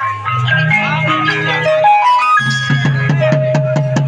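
Live folk music: a melody of held notes stepping up and down over a low drone, then barrel drums (dhol) come in about two and a half seconds in with a fast, steady beat.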